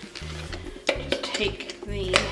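Hard clicks and knocks from a light-up fortune-teller ornament being handled as its base is taken off to reach the battery compartment, over background music.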